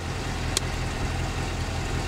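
Corvette V8 engine idling steadily, with one sharp click about half a second in.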